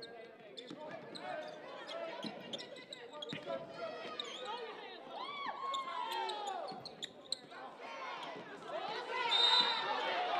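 Sneakers squeaking on a hardwood basketball court in short rising-and-falling chirps, with the basketball bouncing and players calling out across the gym. The squeaks are loudest near the end.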